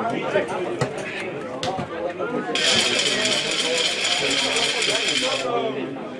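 Men's conversation close by, with a loud hissing rattle of about three seconds that starts and stops abruptly midway through.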